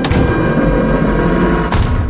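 Loud booming rumble with a sharp hit at the start and a second crash near the end.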